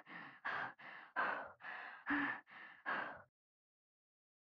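A young woman breathing rapidly and heavily: each sharp breath in is followed by a softer breath out, about one pair every 0.8 seconds. The breathing stops about three seconds in.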